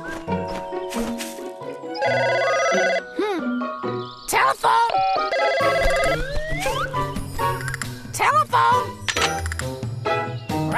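Cartoon telephone bell ringing in two short trilling bursts, over cheerful children's background music, with the wordless vocal sounds of a cartoon parrot in between.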